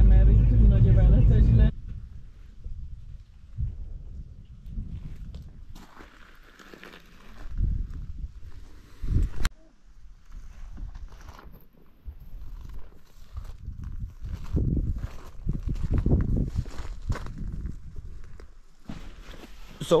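Low road rumble inside a car driving on a wet road, cutting off sharply after about a second and a half. Then quieter, irregular outdoor sounds: soft knocks and thuds, with one sharp click about halfway through.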